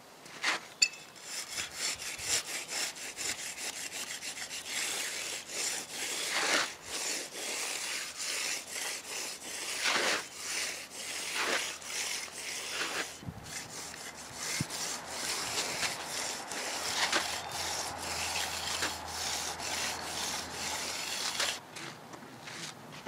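Small brass hand edger scraping along the edge of a firming concrete slab next to the wooden form board, in repeated rasping strokes, rounding the slab's outside edge.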